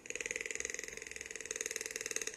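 Toucan calling: one long, dry, croaking rattle made of rapid, even pulses.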